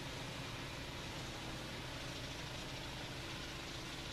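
Faint, steady engine drone of construction machinery, with hiss over it.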